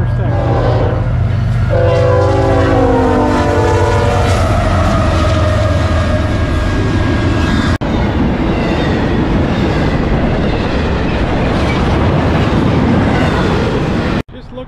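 A diesel-hauled freight train's horn sounds as the locomotives come up, and a second long blast about two seconds in drops in pitch as they go by. After that the train barrels past, with the steady rumble and clatter of empty well cars rolling over the rails.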